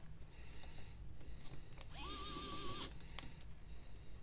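Light clicks and taps of gloved hands fitting parts of a smartphone being reassembled. About two seconds in comes a short whirr of under a second that rises in pitch as it starts and then wavers.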